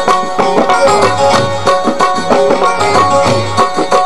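Live Punjabi folk music: tabla playing a steady rhythm, with deep bass strokes, under a gliding melody line and a held drone note.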